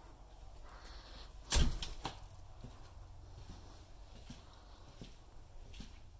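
A single loud, sharp knock about one and a half seconds in, then faint, evenly spaced steps.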